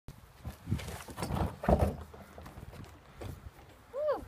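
Plastic wheelbarrow being tipped over and shaken out to dump its load of straw and manure: a run of irregular knocks and scraping thuds, loudest about a second and a half in.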